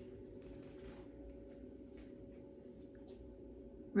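Quiet room tone: a steady hum with a few faint ticks.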